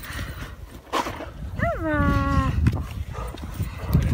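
An excited greyster dog gives one drawn-out whining call about halfway through that rises briefly and then drops in pitch. Rustling and handling noise run underneath.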